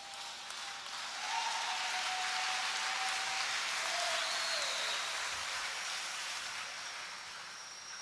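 Congregation applauding, swelling about a second in and slowly fading away near the end.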